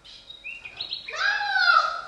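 A child's high-pitched vocal squeals: short rising squeaks about half a second in, then a louder, longer high cry that falls slightly in pitch near the end.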